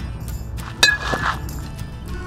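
Metal baseball bat hitting a baseball off a batting tee: one sharp ping a little under a second in that rings briefly. Background music runs underneath.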